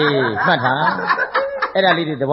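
A person laughing in a run of chuckles, mixed with speech.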